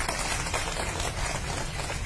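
Applause: many people clapping together, a dense patter of hand claps.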